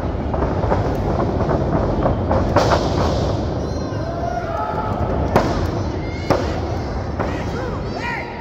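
Wrestlers grappling on a wrestling ring's canvas: a steady rumble of bodies moving on the ring, with sharp thuds on the mat, the loudest about five and a half seconds in and another about a second later, and indistinct voices behind.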